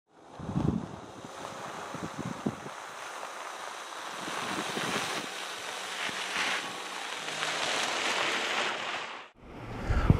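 Wind buffeting the microphone: a steady rushing noise with a few low thumps in the first couple of seconds, cut off abruptly near the end.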